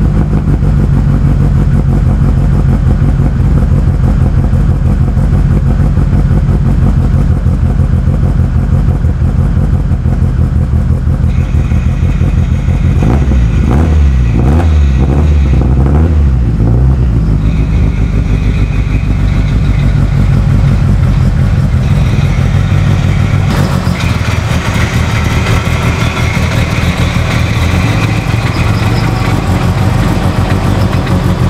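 Mitsubishi Lancer Evolution VIII's turbocharged four-cylinder running loud on E85, just after a cold start. The low rumble wavers and pulses for a few seconds around the middle, and near the end the sound turns brighter.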